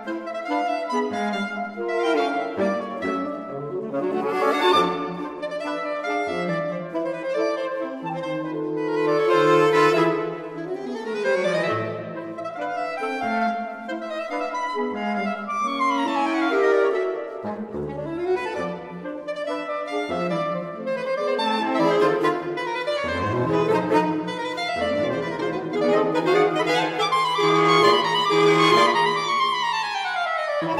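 Saxophone quartet of soprano, alto, tenor and baritone saxophones playing a fast, virtuosic tango with rapid runs sweeping up and down. Near the end a long falling run leads into the closing notes.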